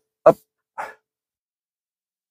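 Speech only: a man says a short 'hop', followed a little under a second in by a brief faint sound, then silence.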